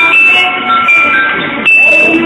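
A thin, high electronic melody of held beeping notes stepping between a few pitches, like a phone or toy tune.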